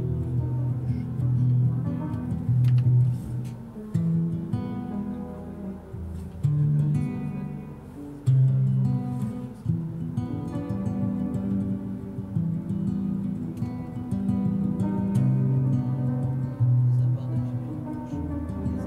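Upright piano playing slow, sustained chords, with an acoustic guitar picking along.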